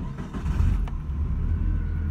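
Suzuki Alto engine started with the key, catching almost at once and settling into a steady idle.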